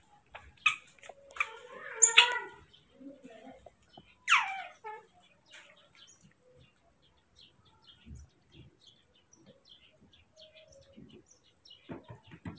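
Young macaque's high squeaks and chirps, loudest in a short cluster about two seconds in and in one call about four seconds in that slides steeply down in pitch, then only faint scattered ticks.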